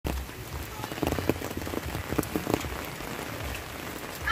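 Steady rain falling on a wet road and foliage, with a scattering of louder taps from about one to two and a half seconds in.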